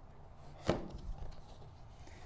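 Quiet handling of a cardboard box being opened, with one sharp click a little under a second in as the lid comes free.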